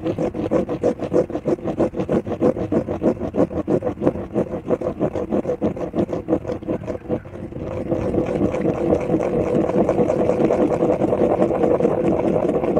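Plastic spirograph gear rolling inside a toothed ring, its teeth clicking against the ring's teeth in a rapid rattle as a pen pushes it round on paper. About halfway through the clicking becomes faster, denser and more even.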